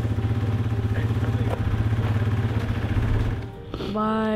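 A small engine running steadily with a rapid low throb, stopping about three and a half seconds in.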